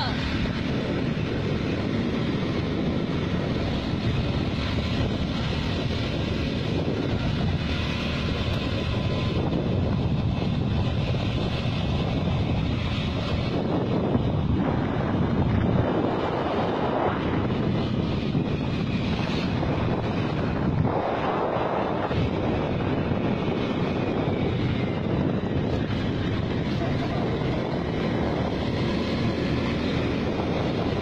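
Rushing wind buffeting the microphone of a phone held out on a selfie stick from a moving motor scooter, with the scooter's engine and road noise underneath. Steady and loud, swelling with a few stronger gusts.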